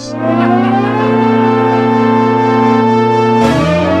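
Polyphonic analog Moog synthesizer, a Little Phatty keyboard driving four Slim Phatty modules as extra voices, playing a loud held chord. The notes glide up into place at the start and slide to a new chord about three and a half seconds in.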